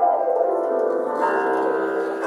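Piano chords struck loudly and left to ring: one at the start and another a little past a second in, with a bell-like sustain.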